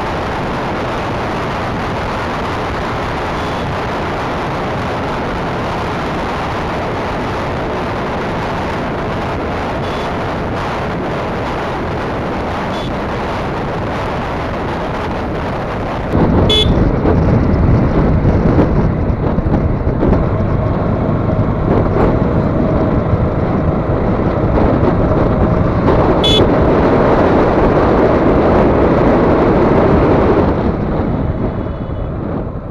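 Motorcycle riding noise heard from the rider's seat: a steady rush of wind and engine at highway speed. About halfway through it turns abruptly louder and rougher, with two short high blips, one just after the change and one near the end.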